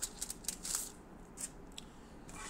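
A few soft, scattered clicks and rustles, short and high-pitched, over faint room hiss.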